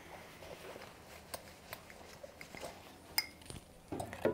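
Faint, scattered light clicks and clinks of a steel saucepan and a drinking glass being handled on a tabletop.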